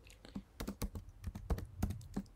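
Computer keyboard typing: an irregular run of about ten quick keystrokes as a word of code is typed.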